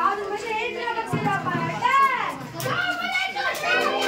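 Children's voices talking and calling out over one another, with one loud high call about two seconds in. Music with steady held notes starts near the end.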